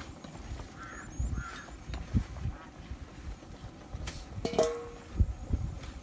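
Farmyard poultry calling: two short calls about a second in, then a louder pitched call about four and a half seconds in, with faint high chirps early on. Irregular low thumps and rumble run underneath.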